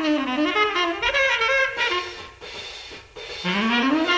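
1948 bebop jazz band recording: the saxophones and brass play the opening melody in ensemble. They break off briefly about two and a half seconds in, then come back in with a lower horn line.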